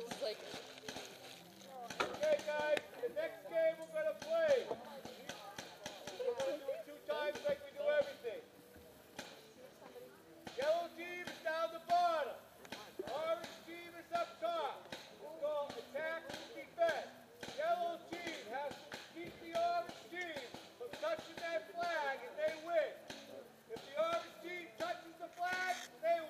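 Indistinct voices of people talking, with scattered light clicks and knocks.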